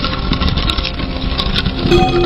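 A loud, rough, engine-like rushing noise from an edited intro sound effect, with a steady low drone under it. A clear ringing tone comes in near the end.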